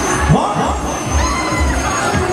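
Riders screaming on a Fabbri Maximum swinging thrill ride as its arms swing them high, several rising and falling cries, over loud fairground music with a pulsing bass beat.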